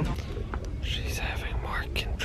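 A woman breathing out heavily twice, breathy and whisper-like, as she breathes through a labour contraction, over a low steady background rumble.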